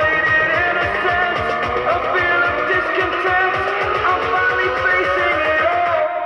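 Electronic music played from a phone over Bluetooth through a TDA7498 class D amplifier board into two bare woofers. It has a fast steady beat and a tone that slides slowly upward.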